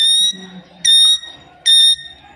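Rose-ringed parakeet giving loud, shrill, steady-pitched calls, three short calls about one every 0.8 s.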